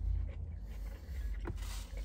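Steady low hum inside a car cabin, with one short click about one and a half seconds in and a faint rustle near the end as fries are handled in their container.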